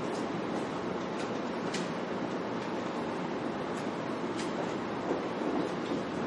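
Steady rushing room noise with a few faint ticks scattered through it.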